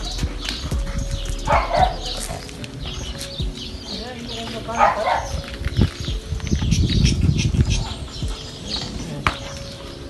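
A dog barking, two short barks about one and a half and five seconds in, with a low rumbling sound later on.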